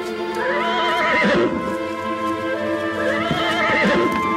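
Horse whinnying twice, each call about a second long with a wavering, shaking pitch, one near the start and one near the end, over steady background music.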